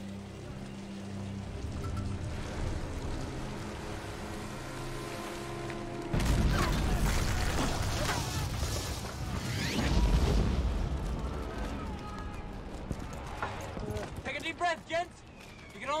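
A dramatic film score with held low notes, then about six seconds in a sudden loud shell explosion with a deep rumble that swells again a few seconds later and slowly fades, as the soundtrack of a trench under artillery fire. Men's voices come in near the end.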